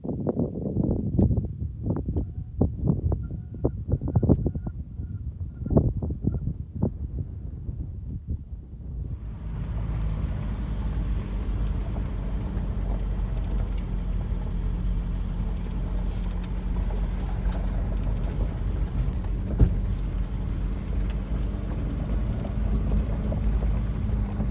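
A 2006 VW diesel Beetle driving a gravel dirt road, heard from inside the car. For the first nine seconds or so there are uneven low rumbles and knocks. Then the sound changes abruptly to a steady drone of engine and tyres on gravel, with a low hum.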